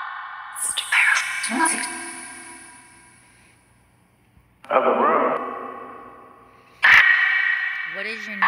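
Necrophonic ghost-box app sweeping its sound bank: short chopped fragments of voice-like sound come out through heavy echo and reverb. There are three sudden bursts, about a second in, near five seconds and near seven seconds. Each fades away slowly.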